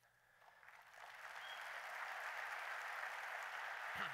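Audience applause, swelling up from silence over about the first second and then holding steady.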